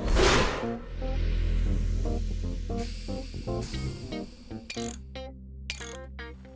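A short cartoon whoosh as an armoured flying hero shoots upward, then background music of short notes over a low rumble.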